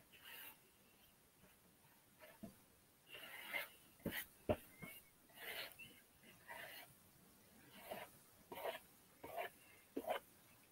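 Faint, intermittent scrubbing strokes as paint is worked onto a roughly sanded canvas, with a couple of sharp clicks about four seconds in.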